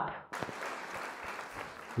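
Applause: many hands clapping, starting abruptly about a third of a second in and running at an even, moderate level until it stops near the end.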